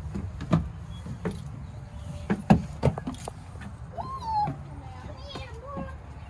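Footsteps and knocks on a wooden playground structure, a string of sharp thuds, the loudest a little past halfway, over a steady low rumble. A short voiced call about four seconds in, and another near the end.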